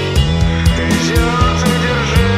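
Instrumental post-rock played by a rock band: drum strikes several times a second over bass and guitar, with one note gliding in pitch midway.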